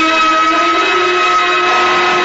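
Orchestral music cue with brass, holding a loud sustained chord that marks the end of an act in a radio drama.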